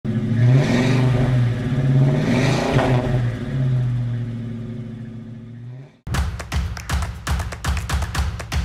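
Car engine revving twice, the pitch sweeping up and back down each time, then holding a steady note that fades away. It cuts off about six seconds in, and music with a steady beat starts.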